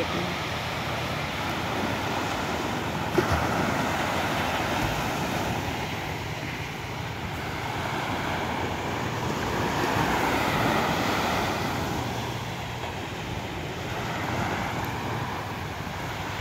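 Sea water washing against the shore with wind on the microphone, a steady noise that swells and eases, over a faint low steady hum. A single knock about three seconds in.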